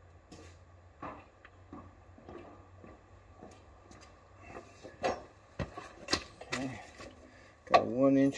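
Scattered light clicks and clinks of hand tools and small parts being handled, with a few sharper knocks about five to seven seconds in, over a faint low hum.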